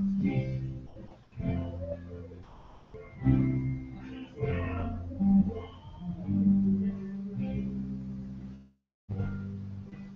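A band playing a funky number, with low notes that change every second or so. The sound cuts out completely for a moment just before nine seconds in.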